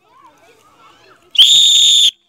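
A sports whistle blown in one loud, steady blast lasting about three quarters of a second, starting near the end: the start signal for a race after the call "on your marks".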